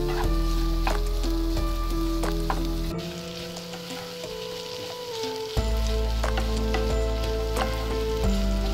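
Diced carrots, green beans and soaked moong dal sizzling in oil in a kadai, stirred and scraped with a spatula in a series of short strokes. A steady background music drone runs underneath and briefly drops lower in the middle.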